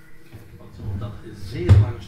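Brief, wordless voice sounds, loudest near the end of the span, over a faint steady background hum.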